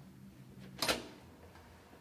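A single sharp clunk about a second in as a heavy metal door with a push-bar latch is unlatched and pushed open, over a faint steady hum.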